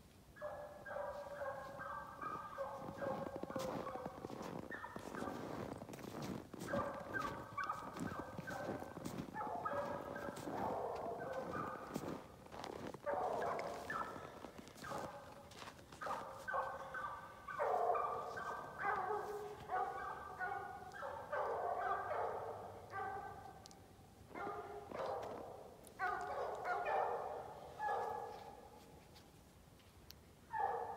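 A pack of hunting hounds baying together as they run a bobcat on its track, many voices overlapping. The chorus swells and drops back several times as the chase moves.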